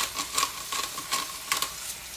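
Bison strip loin steaks sizzling in butter in a skillet, overlaid by a run of irregular crunching clicks from a hand spice grinder being twisted over them.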